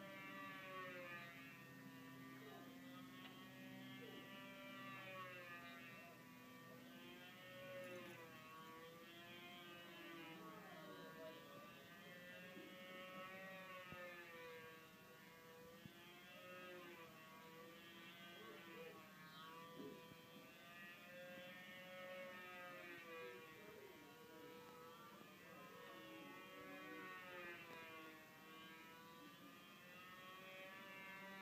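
A control-line stunt model's two-stroke glow engine, a Fox .35, running faint and steady. Its pitch rises and falls over and over as the plane circles on its lines. A low steady hum sits under it for the first several seconds.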